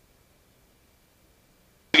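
Near silence with a faint steady high tone, then a voice starts just before the end.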